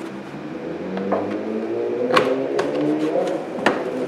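A few sharp clicks and knocks as a car trunk's side carpet lining is pulled back from the plastic trim around the tail light, over a low, wavering hum.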